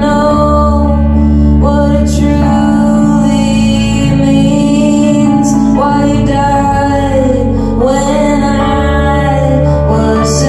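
Live band song: a woman singing long held notes over electric guitar and electric keyboard.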